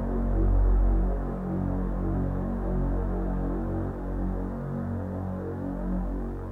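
Yamaha CK61 stage keyboard playing a dark, dull-toned patch: sustained chords that shift every second or so over a strong deep bass, with little treble.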